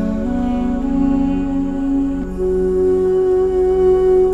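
Armenian duduk, a double-reed woodwind, playing a slow melody of long held notes over a low sustained drone. The melody steps up in pitch twice early on, then settles on one long note from about halfway.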